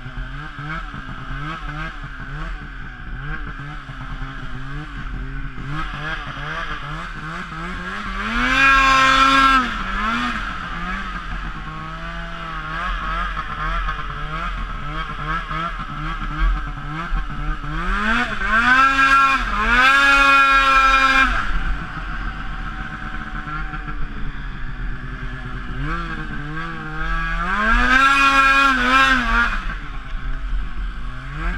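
An 800 cc two-stroke snowmobile engine running under way. It revs up hard three times, about a third of the way in, about two-thirds in and near the end, and drops back between the surges.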